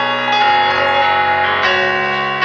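Electronic keyboard playing sustained chords, with a new chord struck a little under half a second in and another near the end.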